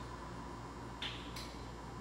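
Faint handling noise from parts of a molded-case circuit breaker over a low steady hum, with one small sharp click about a second in and a fainter tick just after.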